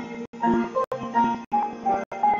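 Upright piano accompanying a man singing into a handheld microphone. The audio cuts out completely for an instant about every half second, breaking the music up.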